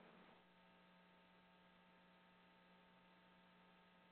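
Near silence: a faint, steady hum on an open telephone conference line.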